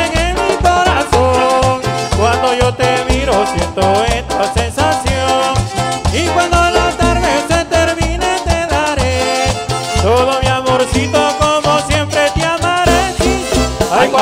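Live band playing a cumbia-style campirana instrumental passage between sung verses, with electric guitars, bass and drums, loud and amplified. A steady low bass beat runs under a bending melody line.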